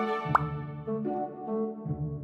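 Gentle background music with held notes over a pulsing bass line. About a third of a second in, a short pop sound effect sweeps quickly upward in pitch.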